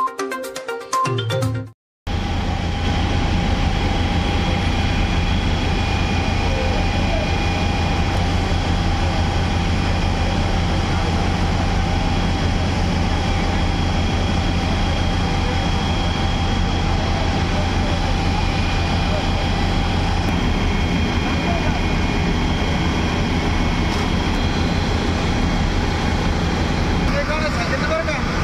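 A short channel jingle, then a steady, loud rushing noise of high-pressure water spraying from fire hoses onto a leaking LPG tanker, over a low, even drone.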